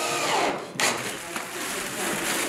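Cordless drill motor driving into wood, its pitch falling steeply as it slows, with a sharp knock just under a second in.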